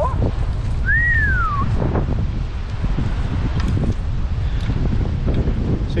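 Wind buffeting the microphone, a steady low rumble. About a second in, a single whistle rises briefly and then falls away.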